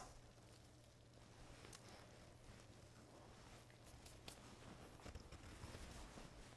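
Near silence: faint room tone with a low steady hum and a few soft, faint clicks.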